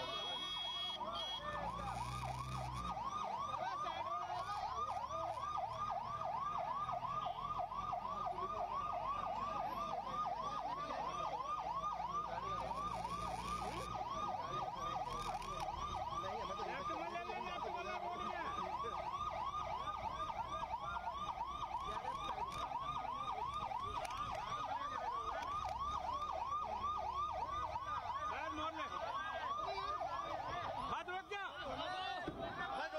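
Police escort vehicle's siren in a fast yelp, its pitch sweeping up and down about three times a second without a break, over a low rumble of vehicles.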